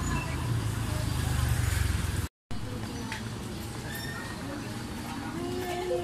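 Low rumble of a car engine and street traffic for about two seconds, then the sound cuts out for a moment. After the cut the rumble is gone, leaving a quieter background with faint voices.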